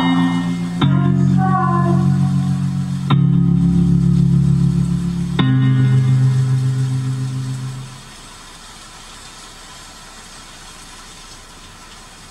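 A recorded song playing back: sustained low chords that change every two seconds or so, with a short sung line early on. It fades out about eight seconds in as the song ends, leaving a steady low hum from the car interior.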